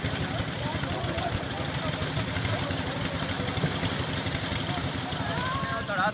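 Engine of a site concrete mixer running steadily with a fast low chugging, with voices in the background.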